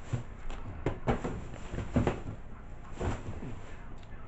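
Hands rummaging and moving items about: a run of irregular knocks and rustles, several of them sharp.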